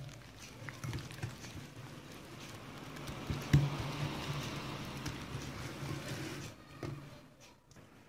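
A whisk stirring and scraping through a crumbly mix of flour, icing sugar, softened butter and egg whites in a bowl: a steady swishing that dies away about six and a half seconds in.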